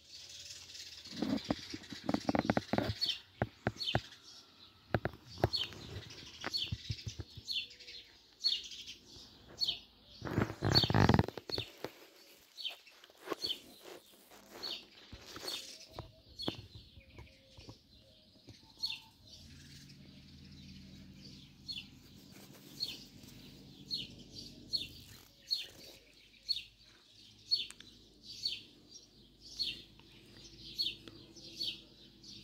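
A small bird chirping over and over, a short high chirp about once a second. Knocks and clatter come in the first few seconds, and a louder thump about eleven seconds in.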